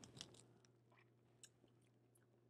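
Near silence, with a few faint mouth clicks and lip smacks as a spoonful of sauce is tasted.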